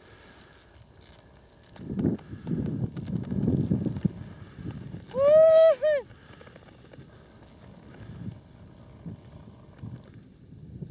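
A person's high, shouted whoop: one call about a second long, rising and then falling in pitch, about five seconds in. Before it, from about two to four seconds in, a spell of low rushing noise.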